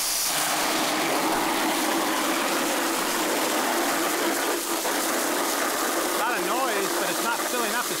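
Water jetting from the brass nozzle of an expandable Pocket Hose Top Brass into a plastic bucket, a steady rushing spray as the bucket fills with the faucet fully open.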